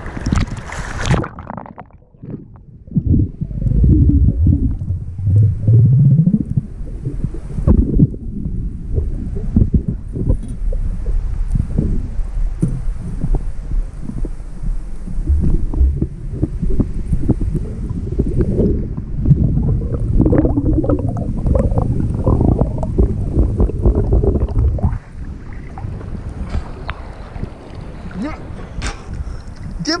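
Muffled underwater sound from an action camera under the sea surface: a brief splash, then a dull low rumble of moving water with many short knocks of the camera housing being handled. It becomes quieter about five seconds before the end.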